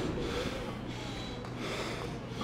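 A man breathing hard after a heavy set of leg training.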